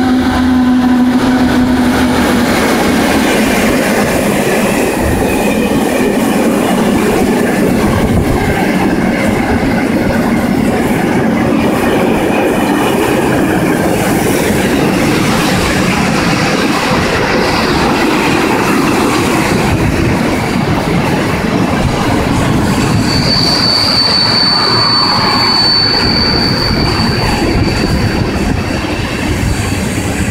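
Heavy freight train of open wagons loaded with scrap rolling past close by, wheels running on the rails in a steady loud rumble. A low hum sounds in the first two seconds while the ET22 electric locomotive goes by. A high wheel squeal starts about 23 seconds in and holds for several seconds.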